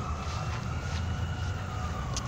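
A distant siren wail: one slow rise and fall in pitch over a low steady rumble.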